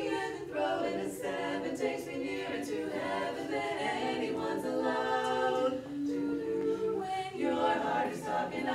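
Women's a cappella quartet singing unaccompanied, several voices holding notes together in harmony, with short breaks between phrases.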